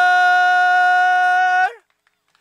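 A commentator's long, drawn-out shout of "골!" ("Goal!") held on one steady pitch, cutting off sharply near the end.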